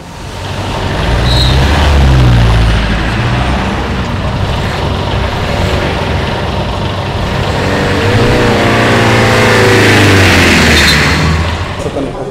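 Road vehicle engines running close by, loud, swelling about two seconds in and again near the end as a heavier vehicle's engine note rises and falls, with a short hiss near the end.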